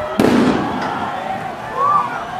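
A single sharp bang about a quarter second in, dying away over half a second: a tear gas canister being fired. Crowd voices carry on underneath, with a short high shout near the end.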